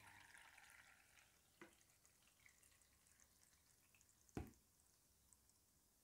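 Near silence, with a faint trickle of whey draining through cheesecloth into a bowl that fades out over the first second. A faint click comes between one and two seconds in, and a single soft thump about four and a half seconds in.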